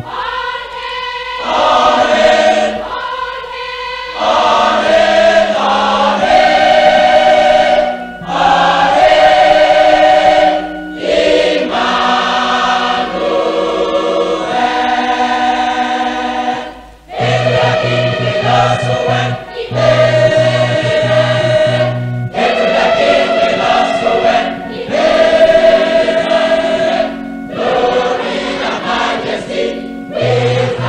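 A choir singing gospel music, in sung phrases of a few seconds each.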